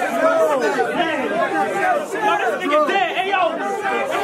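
Several men's voices talking and calling out over one another in a crowd reacting, with no clear lone speaker.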